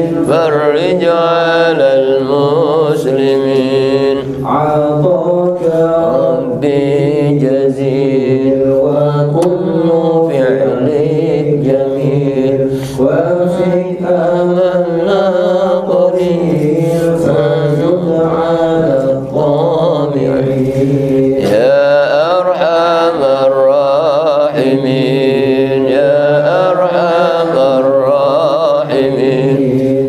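A man chanting melodically into a microphone: one long recitation line with wavering, ornamented pitch, broken only by a few brief pauses for breath.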